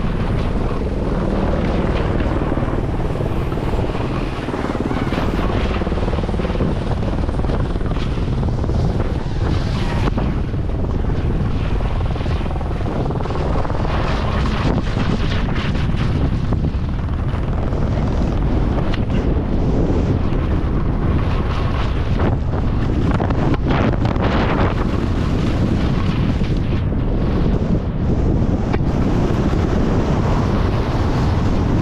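Steady wind buffeting on a GoPro's microphone as a skier descends a steep slope at speed, with the sharp scrape of ski edges on crusty snow now and then.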